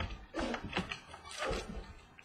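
Trading cards being handled and set down on a tabletop: a few irregular clicks and rustles of card stock.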